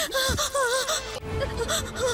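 A woman's startled, gasping cry that wavers up and down in pitch for about a second, as she is shoved down onto a bed.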